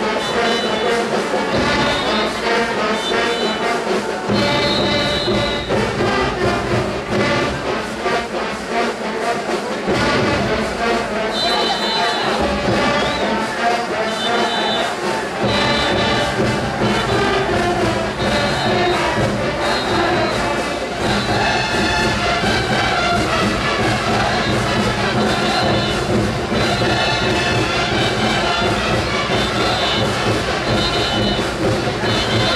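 Brass band playing lively Andean festival dance music, trumpets and trombones carrying the melody. The low bass part comes in spells during the first half and plays continuously from about halfway through.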